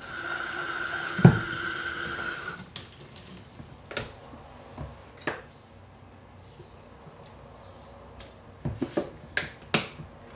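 Tap water running into a plastic calf feeding bottle for about two and a half seconds, then shut off; afterwards, scattered knocks and clunks as the bottle is handled in the sink, several close together near the end.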